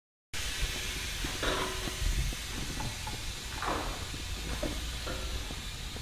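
Steady hiss-like background noise of a car repair shop, with a few faint, brief sounds over it.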